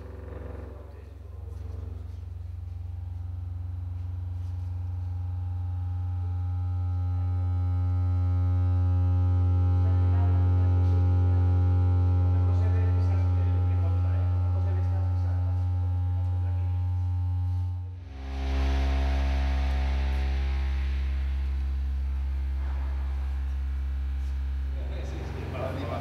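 A loud, steady low electronic tone with buzzing overtones played through a loudspeaker to drive the water surface for a laser projection. It swells slowly and then eases off, cuts out briefly near the end and comes back as a slightly lower tone, the next step in a sequence of test frequencies.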